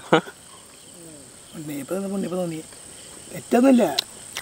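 Crickets chirring steadily in a high, constant pitch, under short bursts of men's voices talking and laughing.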